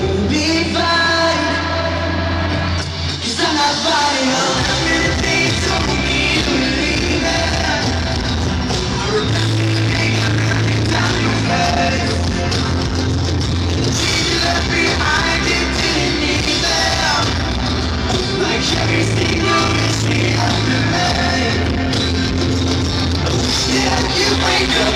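Live pop-rock band playing a ballad in concert: bass, drums and guitars with sung vocals, loud and continuous.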